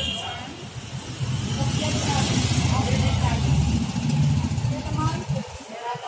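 A motor vehicle passing close by: a loud low rumble that builds from about a second in, holds for about four seconds, and drops away abruptly near the end, with faint voices underneath.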